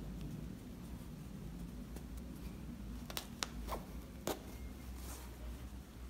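Cotton fabric rustling softly as hands smooth and align layers of unbleached cotton lining, with a few light clicks about halfway through, over a low steady hum.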